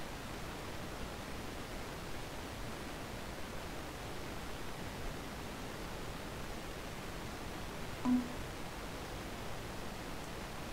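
Steady hiss of a voice microphone's background noise, with one short low hum-like sound about eight seconds in.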